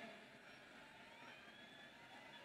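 Near silence in a pause of speech, with faint high gliding tones in the background.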